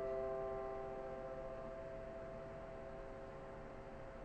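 The ringing tail of a grand piano chord, several held notes fading slowly toward silence.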